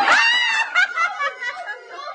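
A group of people bursting into high-pitched laughter and squeals, loudest in the first second, then breaking into shorter bursts of giggling.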